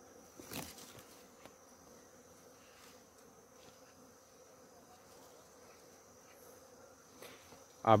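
Faint steady buzzing of bees working the flowering coffee blossoms, with a brief rustle about half a second in.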